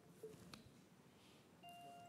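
Near silence with a couple of faint clicks. Near the end a faint steady electronic tone starts: the Meta Portal Go smart display beginning to ring with an incoming video call.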